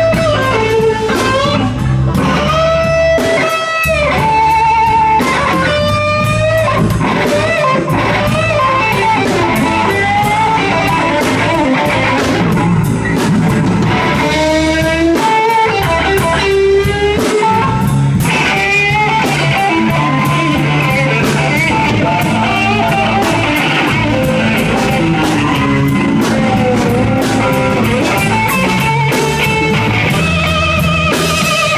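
Live electric blues band playing a slow blues: a lead electric guitar solo with sustained, bent and wavering notes over bass and drum kit.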